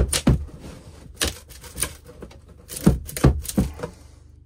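About a dozen irregular sharp cracks and knocks as gloved hands flex and pry at the sawn side of a plastic battery case to break it free of the dense expanding foam holding it.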